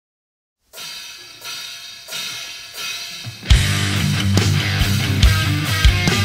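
Opening of a heavy metal song. After a moment of silence, a quieter intro of repeated chords grows louder in steps. Then the full band with heavy drums comes in about three and a half seconds in.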